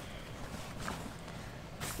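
Faint rustling and handling of a fabric bag as things are stuffed into it and it is lifted, with a short louder rustle near the end.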